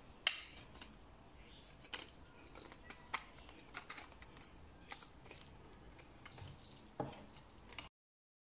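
Scattered light clicks and taps of hard 3D-printed plastic parts being handled and fitted together, a few seconds apart. The sound cuts off abruptly near the end.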